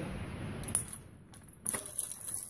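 Light metallic clinks and a short rattle from the bicycle's chain and drivetrain parts being handled: one click just before the middle and a cluster near the end.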